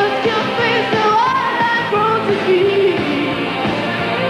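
Live pop-rock band playing, with a female lead vocal singing a melody over drums and backing instruments.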